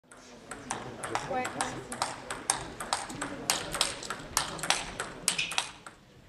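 Table tennis ball clicking off bats and table in quick succession, several sharp hits a second, with a man's voice saying "wait" about a second in.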